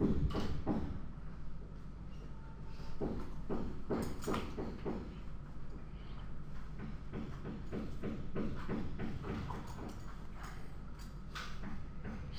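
Irregular knocking and banging of building work, coming in clusters of quick knocks, over a steady low hum.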